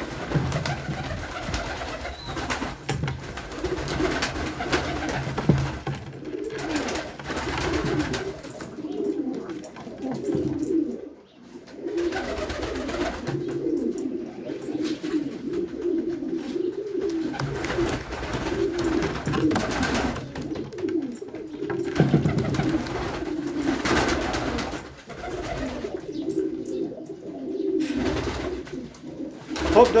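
A flock of domestic pigeons cooing continuously, many low, wavering coos overlapping one another.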